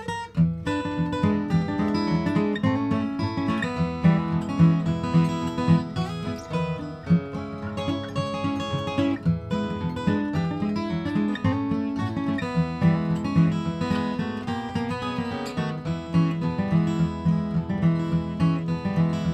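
Two acoustic guitars playing the instrumental introduction to a bluegrass song.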